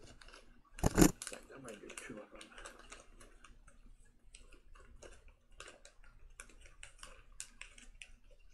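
A packet of algae wafers being handled and opened by hand: crinkling and rustling with many small clicks. A single loud, sharp burst about a second in stands out above the rest.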